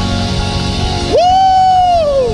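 Church praise music with steady held keyboard chords. About a second in, a man shouts a long call into a microphone, the loudest sound here, rising quickly, holding, then sliding down in pitch.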